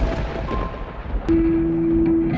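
A low, thunder-like rumble from an intro sound effect, followed about a second and a half in by a steady sustained note that carries on.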